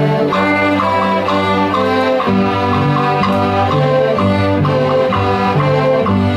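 Young intermediate-level string orchestra of violins and cellos playing together, held low notes changing every second or two under a quick-moving line of short higher notes.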